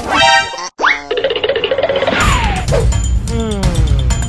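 Cartoon comedy sound effects over a music track: a quick upward pitch glide about a second in, a wavering tone, then two long falling whistle-like glides. A beat with steady percussion comes in about two seconds in.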